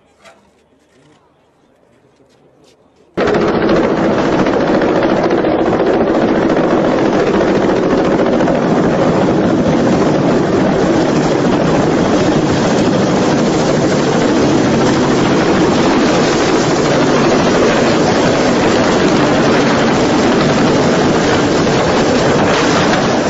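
Loud, steady roar of a rotor aircraft flying close by, starting suddenly about three seconds in after a faint stretch with one small click.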